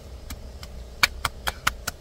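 Hands patting the face, a quick run of about five light slaps roughly a fifth of a second apart, over a low steady rumble.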